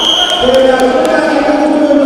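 A referee's whistle, one long steady blast, cuts off about half a second in, over a crowd of voices shouting and chanting in a large hall.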